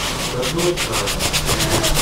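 A cloth rubbing quickly back and forth over a rusty steel axe head, about eight strokes a second, wiping off surface rust loosened by a few minutes' soak in rust-remover solution.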